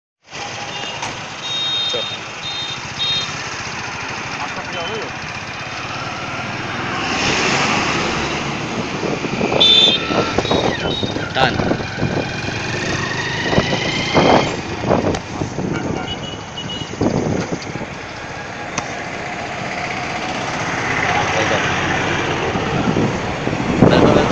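Steady road and engine noise heard from inside a moving vehicle, with passing traffic. Short high-pitched beeps sound a few times near the start and again about ten seconds in.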